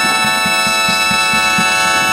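Marching brass band of trumpets, trombones, saxophones and sousaphone holding one long sustained chord, with drums beating quickly underneath at about five strokes a second.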